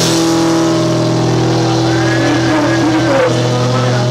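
Live rock band holding a sustained, distorted chord, with electric guitar and bass ringing out. A high wavering note comes in about halfway through.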